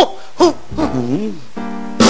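A man's voice calling out "hoo, hoo" twice, each call rising and falling in pitch. Near the end a steady held musical note comes in.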